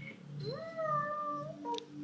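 A Shih Tzu gives a single high-pitched whine that rises and then holds for about a second, followed by a brief click.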